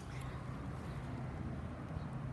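Quiet outdoor background: a faint steady low hum with no distinct event.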